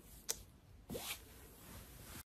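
Faint handling noise: a sharp click about a third of a second in, then a short rustling swish about a second in, over low room tone.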